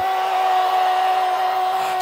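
A low keyboard note held steady, with an even rushing noise over it, in the pause after the call for a shout of praise.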